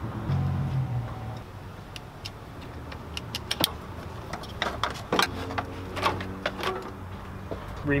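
Scattered plastic clicks and knocks as the intake is taken apart: an electrical connector unclipped from the air flow meter, and the airbox and intake parts handled, over a low steady hum.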